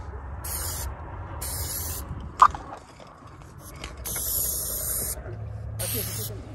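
Aerosol spray-paint can spraying in short hissing bursts, four of them, the longest a little over a second. A single sharp click comes about two and a half seconds in.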